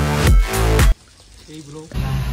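Electronic background music with a heavy bass beat that cuts off abruptly about a second in, leaving a quieter stretch.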